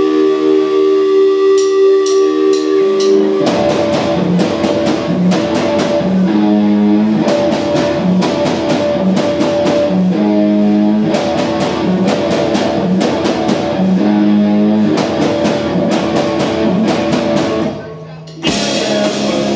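Live rock band of electric guitar and drum kit. A held guitar chord rings over light cymbal strikes, then about three and a half seconds in the full kit and guitar come in together with a driving, repeating riff. The band breaks off briefly at the very end.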